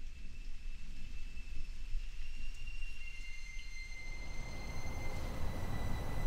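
Low, steady background rumble with faint, thin high-pitched whines running through it.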